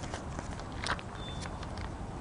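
A few light taps and rustles, the clearest about a second in, over steady low outdoor background noise, with a brief faint high tone near the middle.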